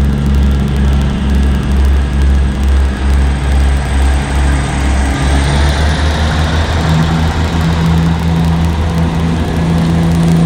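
Diesel train engine running with a low, steady throb as a ScotRail diesel multiple unit moves past. The engine note shifts slightly higher about halfway through, with a faint high whine rising around the same time.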